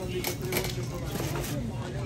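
Faint, indistinct background voices in a busy shop, with a few light clicks and knocks.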